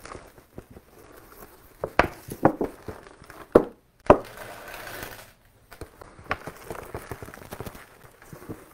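Potting soil pouring and sliding out of a plastic nursery pot into a planter, with several sharp knocks on the pot and a stretch of soft rustling around the middle.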